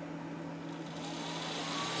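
Series 1 Pro 3D printer's extruder cooling fan starting up as the hot end heats: a faint whine rising in pitch from about a second in, over a low steady hum, the whole sound slowly growing louder.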